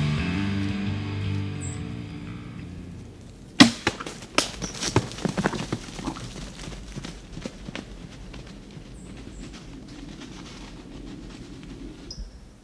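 Rock music fades out over the first few seconds. About three and a half seconds in comes the sharp crack of a bow shot and the arrow striking the buck, followed by a quick string of clicks and thuds as the deer runs off through the leaves and brush.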